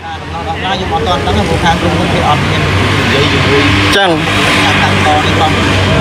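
Street traffic noise with a vehicle engine running steadily nearby, with faint voices in the background and a sharp click about four seconds in.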